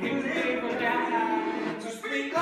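Singing voice holding long notes that bend in pitch, with music behind it.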